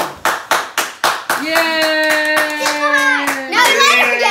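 Hands clapping fast, a string of claps in the first second or so. Then a voice joins in with a long, held cheer while the clapping goes on.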